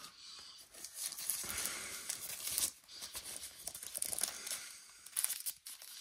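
Packaging wrap crinkling and rustling in irregular bursts as it is handled and pulled open by hand.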